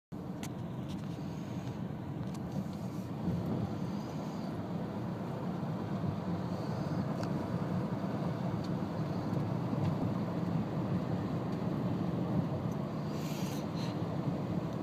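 Steady low rumble of a car's engine and tyres on asphalt, heard from inside the cabin while driving slowly.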